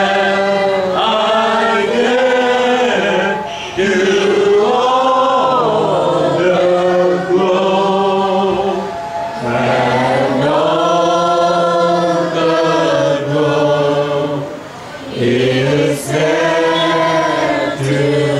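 A small group of voices, a woman and men together, singing a worship song in long held phrases, with short breaks for breath between phrases.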